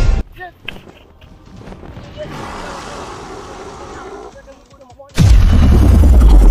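A faint hissing rush, then a sudden loud, deep boom about five seconds in that carries on: an added boom sound effect for the lightning portal opening.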